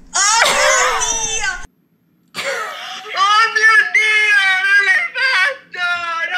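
Women shrieking in shocked surprise at the reveal: a high, sliding shriek, a short break, then longer drawn-out cries, heard over a video call.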